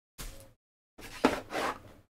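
Two short bouts of handling noise: hands rummaging in a cardboard box and picking up a cable plug, the second bout louder.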